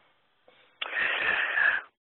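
A person's loud breath into the microphone, a noisy rush of about a second that starts a little before the middle and stops just before speech resumes.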